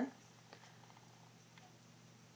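Quiet room tone with a steady low hum and one faint tick about half a second in.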